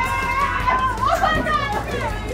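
A group of people yelling and chanting "Mosh pit!" over heavy metal music, with one long high yell held for about a second near the start.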